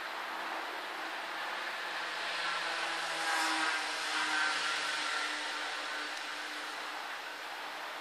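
Electric sectional garage door closing: the opener motor runs with a steady hum as the door travels down its tracks.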